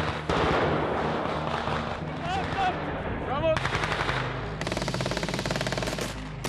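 Automatic gunfire from military rifles, fired in rapid bursts that come thick and fast over the second half.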